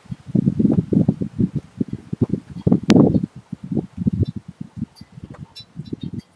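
Storm wind buffeting the microphone in rapid, irregular low thumps, with the loudest gust about three seconds in.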